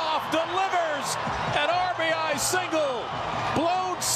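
Speech: a broadcast commentator's voice talking over the game, with background noise beneath.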